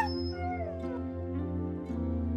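A dog's short high call, sharp at the start and falling in pitch over about a second, over steady background music.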